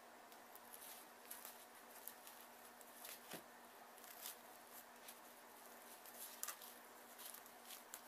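Near silence: faint scattered clicks and rustles of felt and paper being handled at a craft table, over a faint steady hum.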